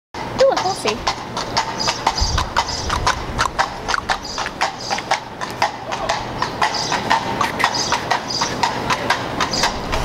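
A quick, fairly regular run of sharp clicks or clops, several a second, over a steady noisy background, with a voice among them.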